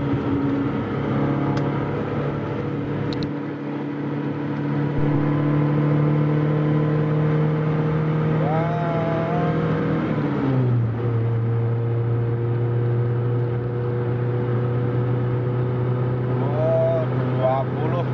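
Suzuki Escudo engine heard from inside the cabin, pulling hard under acceleration in third gear, its note climbing slowly. About ten seconds in the pitch drops sharply at the upshift to fourth, then climbs again as the car nears 120 km/h.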